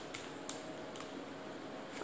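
Faint handling noise of coloring pencils being picked through to choose the next colour, with a couple of light clicks in the first half second over a faint steady hum.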